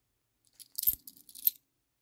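Small brass coins clinking together in a quick cluster of metallic clicks with one dull knock among them, lasting about a second.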